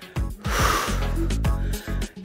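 Background workout music, with a sharp exhale from a woman doing a crunch about half a second in.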